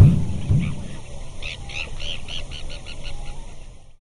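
Sound logo for an end card: a low thud that fades over the first half second, then a run of short high chirps, about three or four a second and quickening, fading out near the end.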